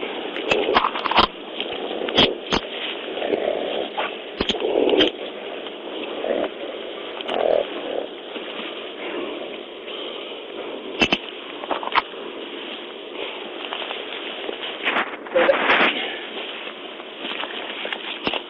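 Scuffle and handling noise from an arrest in a thin, low-fidelity police recording: scattered sharp clicks and scrapes with muffled voice sounds over a steady hiss, and a louder burst of noise near the end.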